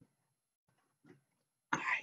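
Faint, soft knocks and taps of small desk handling, then a woman's voice breaks in abruptly near the end with a short throaty "All right."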